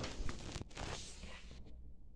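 Gloved hand rubbing over a block of ice on a tabletop: a rustling scrape with a few small clicks that stops about a second and a half in.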